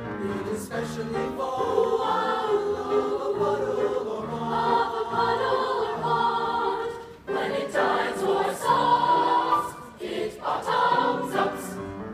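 Mixed-voice school choir singing sustained notes in harmony, with short breaks between phrases about seven and ten seconds in.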